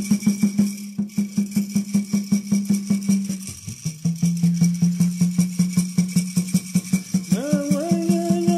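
Native American Church water drum beating a fast, even pulse with a gourd rattle shaking alongside. The drum's tone drops a little in pitch about halfway through and rises again near the end, when a male voice resumes singing.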